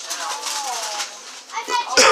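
Children's voices, indistinct chatter that the speech recogniser did not turn into words.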